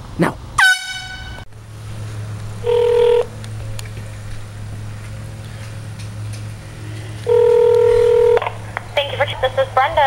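Handheld canned air horn blasting three times: a short blast about half a second in whose pitch drops quickly into a steady note, then a half-second blast about three seconds in and a longer one-second blast around seven and a half seconds in, both loud, steady single notes.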